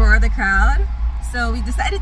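A woman speaking inside a car, over a steady low rumble.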